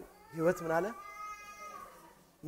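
A man's voice makes two short syllables, then a thin, high, steady squeal lasting nearly a second.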